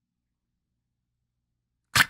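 Near silence for almost the whole stretch, then a man's voice starts abruptly right at the end.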